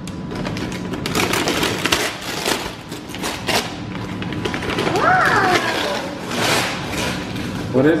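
Paper gift bag and tissue paper rustling and crinkling as a toy is pulled out of it by hand.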